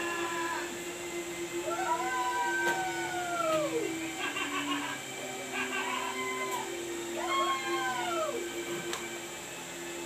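Three drawn-out animal calls, each rising and then falling in pitch; the first, starting a couple of seconds in, is the longest. A steady hum runs underneath.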